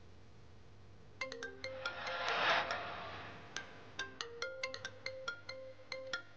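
A mobile phone ringtone: a run of short, marimba-like pitched notes that starts about a second in and repeats, with a brief swell of noise around two and a half seconds.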